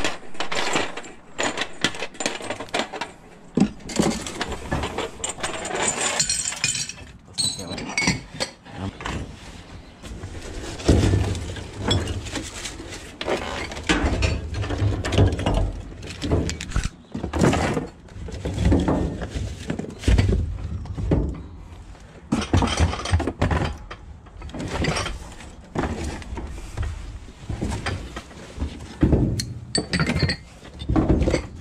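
Handling noise of salvaged tableware and packaging: metal cutlery clinking against a tray, and cardboard boxes and plastic wrap rustling and scraping, with frequent irregular knocks and clatters.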